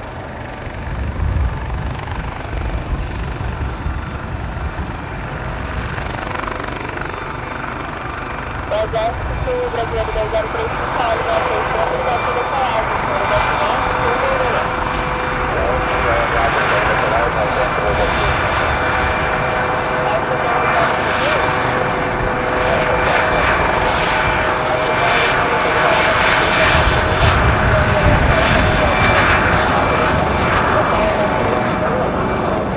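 Helibras HM-1 Pantera military helicopter, a Eurocopter Panther with a ducted Fenestron tail rotor, hovering low. Rotor and turbine noise grow steadily louder as it draws closer, with a steady whine setting in about a third of the way through.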